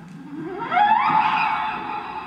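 Improvised experimental music: a pitched tone that glides steeply upward over about half a second and is then held, loudest about a second in.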